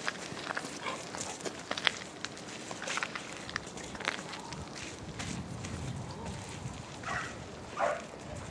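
A dog's paws and a person's footsteps on gravel: scattered crunches and scrapes as they move through a line of weave poles, thickest in the first few seconds. Two short breathy sounds come near the end.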